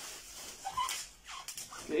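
A zipper on the gaming chair's fabric back cover being pulled, a short rasp, with a few brief high squeaks a little later.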